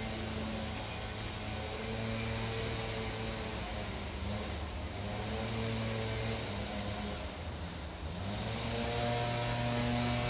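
A motor running with a steady pitched hum, its pitch rising and the hum growing a little louder about eight and a half seconds in.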